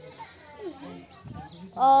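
Voices talking faintly, then a girl speaking loudly close to the microphone near the end.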